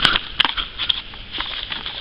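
Pages of a paperback technical manual being flipped through by hand: a quick run of paper flicks and rustles, sharpest in the first second.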